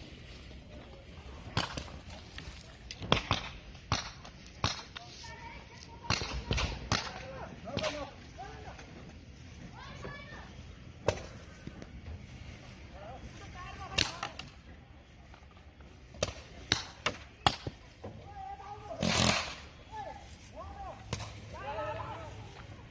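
Paintball markers firing: sharp single pops, sometimes two or three in quick succession, scattered irregularly. Distant players shout between the shots.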